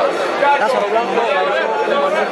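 Speech only: a man talking in Spanish close to the microphone, over a background of other people's chatter.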